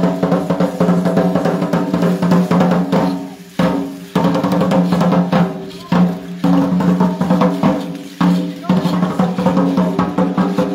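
Fast, steady drumming with a low ringing tone, accompanying a dance procession. Three times the drumming fades briefly and then comes back abruptly.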